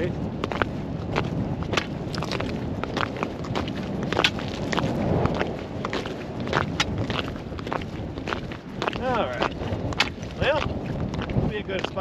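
Boots walking on bare lake ice: a run of crisp steps, about two a second, over wind rumbling on the microphone.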